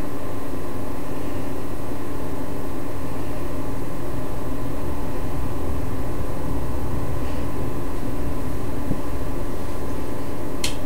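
Steady, unchanging hum with hiss at a constant loudness, with no distinct events.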